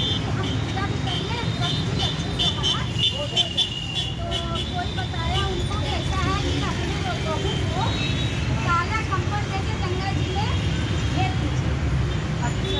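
Several women's voices chattering at once, none clearly in front, over a steady low rumble.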